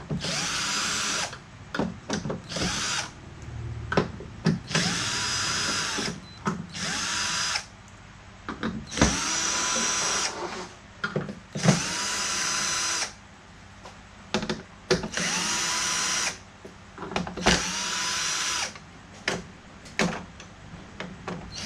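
Cordless electric screwdriver backing screws out of a Samsung LCD TV's plastic back cover. It runs about eight times for a second or so each, the motor whining up in pitch and then holding steady, with small clicks between runs.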